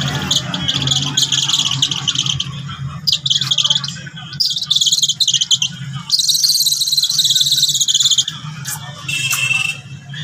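Young eagle giving shrill, high-pitched calls in five bouts, each one to two seconds of rapid, chattering notes; the longest bout comes after about six seconds.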